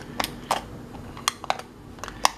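Sharp plastic clicks of a finger pressing the push-button face of a battery-powered LED emergency wall light, about five presses at uneven intervals. The light does not switch on: the switch is not working.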